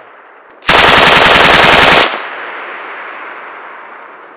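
A machine gun fires one long burst of rapid, evenly spaced shots for about a second and a half, very loud at close range, starting under a second in and stopping abruptly. Its echo then fades slowly across the open valley.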